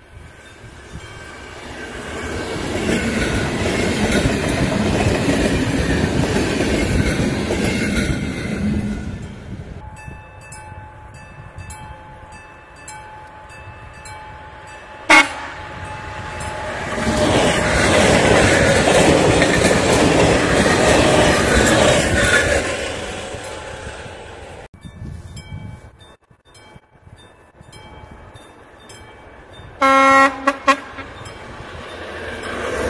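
Two ZSSK class 460 electric multiple units passing one after the other. Each pass swells up and fades over about seven seconds, with wheel and rail noise. In the quieter gaps a level-crossing warning bell ticks fast and evenly, and a single sharp crack comes about midway.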